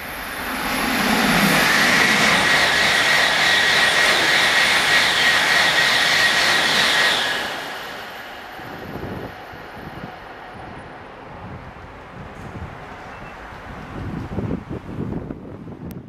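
ICE high-speed train passing through a station without stopping: a loud rushing roar with a steady high whistle builds over about two seconds, holds, and dies away about seven seconds in. Uneven gusty noise follows to the end.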